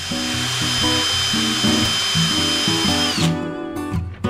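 A metal-working machine on a lathe setup running at high speed, a steady high whine over a hiss; its pitch drops as it winds down and it stops about three seconds in. Acoustic guitar music plays throughout.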